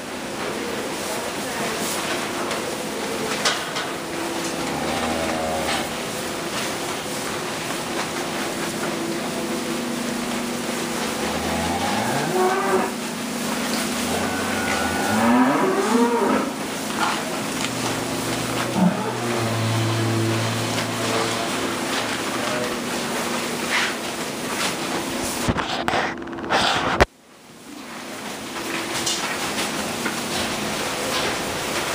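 Holstein heifers mooing several times, each call rising in pitch, the clearest ones about halfway through, over a steady barn-fan hum.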